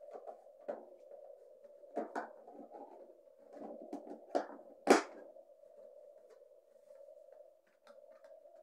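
A plastic toolbox being shut: several sharp clicks and snaps from its lids and latch clasps, the loudest about five seconds in, over a steady low hum.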